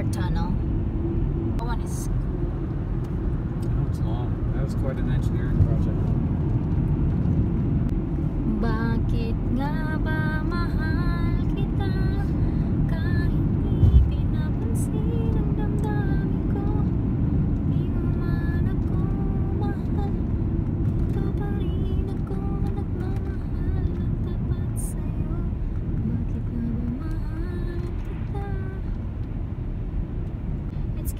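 Steady road and engine rumble heard inside a moving car's cabin on a highway, with one low thump about halfway through.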